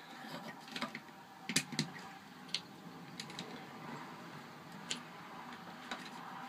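Lego bricks clicking as they are pressed onto one another: about half a dozen short, sharp snaps at irregular intervals.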